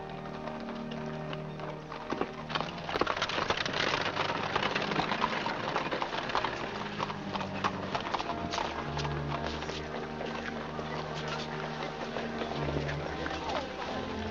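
Horse hooves clip-clopping on a paved street, the clatter busiest from about two seconds in until past the middle, over background music of held low notes and a murmur of voices.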